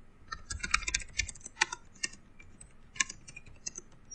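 Typing on a computer keyboard: a quick run of keystrokes in the first second or so, then scattered single keystrokes.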